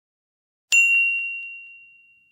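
A single bright, bell-like chime struck once about three-quarters of a second in and ringing down slowly on one high tone, with a few faint echoing repeats, as an intro sound effect.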